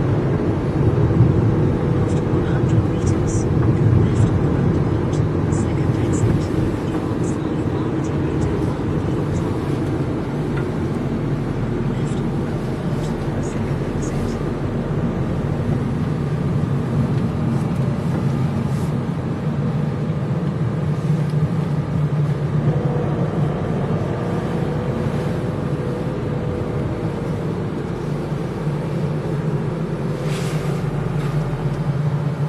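Steady road and engine hum of a moving car, heard from inside the cabin.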